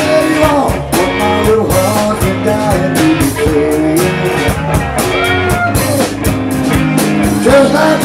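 Live rock band playing: electric guitars over bass and drums, with a lead line bending up and down in pitch and a steady drum beat.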